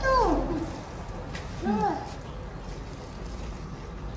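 Baby monkey giving two short pitched calls: a falling one right at the start and a brief arched one just under two seconds in.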